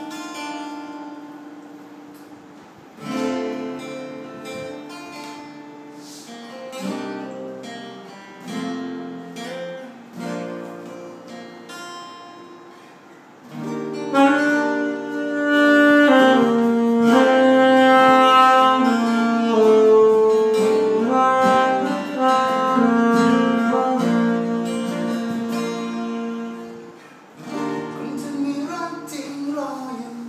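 Two acoustic guitars play an instrumental passage of picked notes. About halfway through a saxophone comes in louder with a melody of long held notes, stopping shortly before the end.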